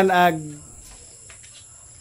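A man's voice trails off in the first half second, then a steady high-pitched chirring of crickets holds over a quiet background.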